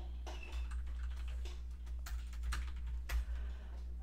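Typing on a computer keyboard: an irregular run of quick key clicks over a steady low hum.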